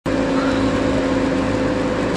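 A vehicle driving on a wet road, heard from inside the cabin: a steady engine hum over an even hiss of tyres on wet tarmac.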